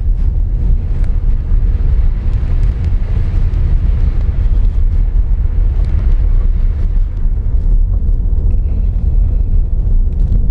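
Road noise heard from inside a small Honda car driving on an unpaved road: a steady low rumble from the tyres and engine, with a few faint ticks.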